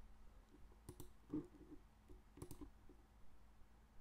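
A few faint computer mouse clicks: a couple about a second in and another pair about two and a half seconds in.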